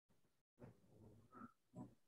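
Near silence, broken by a few faint, brief, indistinct sounds in the second half.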